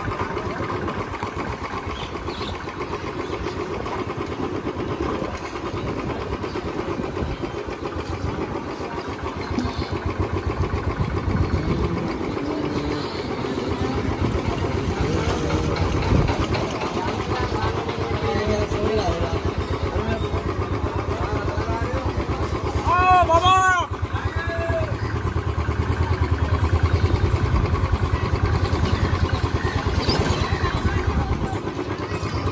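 Motorcycle or scooter being ridden along a street: steady engine and road noise throughout, a little louder in the last few seconds. About two thirds of the way through, a brief warbling pitched sound of four or five quick rises and falls cuts in.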